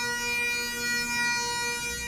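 Bagpipes playing a long held note over their steady drones.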